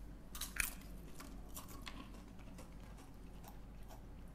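Faint crunchy chewing: a snack being bitten into and chewed, with irregular crisp crunches that are densest about half a second in.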